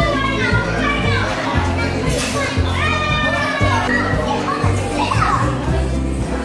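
A group of young children chattering and calling out excitedly over loud music with a steady bass beat.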